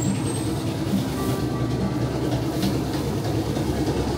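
Electric bread slicing machine running, a steady loud mechanical rattle as its blades work through a loaf.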